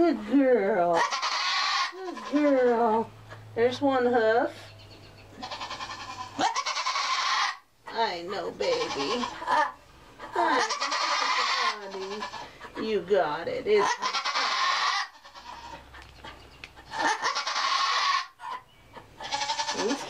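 Nigerian Dwarf doe in labour crying out again and again, with wavering, drawn-out bleats as she strains through contractions. Harsh noisy bursts come between the calls.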